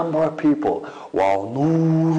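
A man's voice speaking, then drawing out one word on a long, steady sing-song note from a little past the middle.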